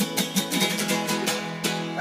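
Acoustic guitar strummed in quick, steady strokes, with held string notes sounding underneath.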